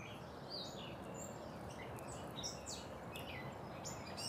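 Small birds chirping and twittering in quick, short calls, over a steady background rush of outdoor noise.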